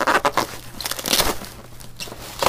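Plastic bag and bubble wrap crinkling as they are handled, in a few short irregular rustles, the longest about a second in.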